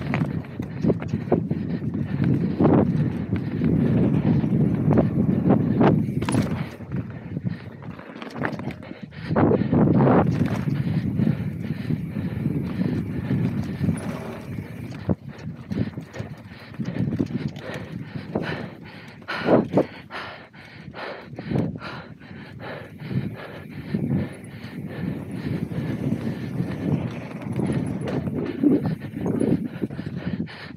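Mountain bike descending a rough dirt and root trail at speed: tyres rumbling over the ground, with frequent knocks and rattles from the bike. A fast run of rattling clicks fills the second half.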